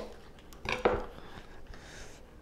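Chef's knife on a plastic cutting board: one sharp knock right at the start as the blade cuts through a green onion, then two light knocks a little under a second in as the knife is laid down on the board.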